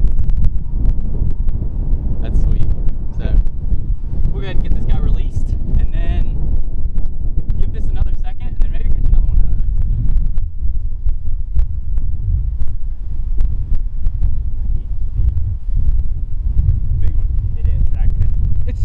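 Strong wind buffeting the microphone, a steady low rumble throughout, with faint, indistinct voices in the first half.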